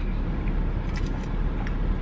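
Steady in-cabin noise of a parked vehicle: a low engine-idle rumble under the even hiss of the air-conditioning fan.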